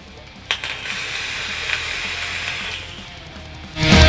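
A vape device being fired for a long drag: a click about half a second in, then a steady hiss of air drawn through the atomizer for about two seconds, dropping lower after that. Just before the end, loud rock music with electric guitar starts.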